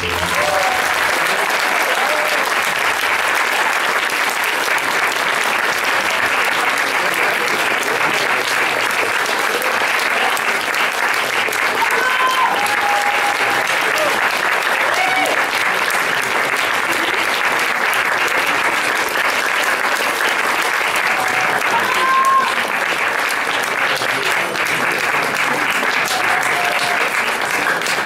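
Audience applause, steady and sustained, with a few brief calls from the crowd rising above it.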